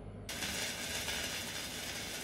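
Surface noise of a shellac 78 rpm record under the stylus before the music begins: a steady hiss with crackle that starts suddenly just after the start, over a low hum.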